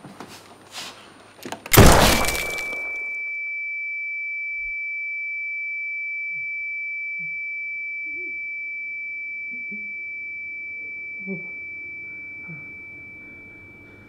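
Pistol shots, the last and loudest about two seconds in, followed by a single high steady ringing tone, the ear-ringing effect after gunfire, that slowly fades out near the end. Faint groans of wounded men come in under the ringing.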